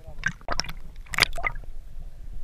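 Water sloshing and gurgling around an underwater camera, in two short crackling bursts, one about half a second in and one just over a second in, over a low steady rumble.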